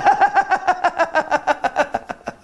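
A man laughing heartily, a fast, even run of voiced ha-ha pulses, about eight a second, that thins out near the end.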